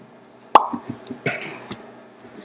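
A single sharp tap about half a second in, with a short ringing after it, followed by a few softer knocks and rustles.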